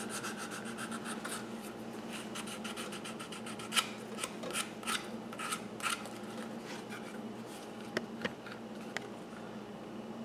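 Faint, irregular scraping strokes of a hand abrasive worked across the edge of a Kydex holster, rounding off and blending in a sharp corner.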